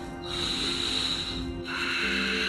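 Background music with a man breathing out hard through his nose twice, each a long hissy exhale of over a second.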